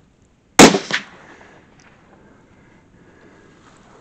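A single shot from a Tikka .243 rifle at a fox: one sharp, very loud report, followed about a third of a second later by a second, fainter bang and a short fading tail.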